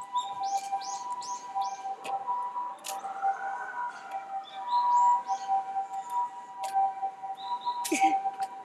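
Small birds chirping in short high runs: about four quick notes near the start and more around the middle, with scattered sharp clicks. Under them runs a steady hum held at two pitches, and a faint tone rises and falls slowly near the middle.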